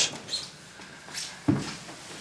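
Faint rustling of bedding and clothes, with a soft dull thump about one and a half seconds in.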